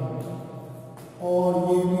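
A man's voice drawn out in long, steady monotone notes, chant-like. It fades through the middle and comes back strongly about a second and a quarter in.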